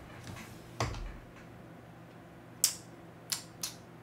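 Four short, sharp clicks spread over a few seconds, the loudest about two and a half seconds in, over a faint low steady hum.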